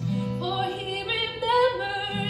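A woman singing to her own acoustic guitar; the voice comes in about half a second in over held guitar notes.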